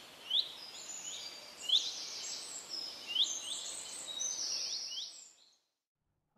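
Birds chirping: short rising chirps every half second or so, with higher thin notes over them and a faint hiss behind. The sound fades out a little after five seconds in.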